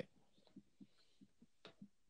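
Near silence in a studio, with a few very faint, short, low thumps and a faint tick near the end.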